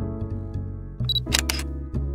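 Background music with a steady bass line; about a second in, a short high beep, then a quick run of camera shutter clicks.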